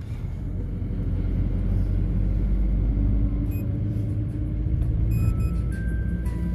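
Steady low rumble of engine and road noise inside a moving road vehicle's cabin.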